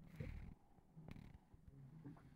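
Near silence with a low steady hum; a brief soft rustle just after the start, then a single sharp click about a second in, a computer mouse clicking to place the cursor.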